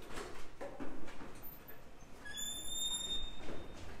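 A few knocks and footsteps around a hallway door, then a high, steady squeak about a second long near the middle.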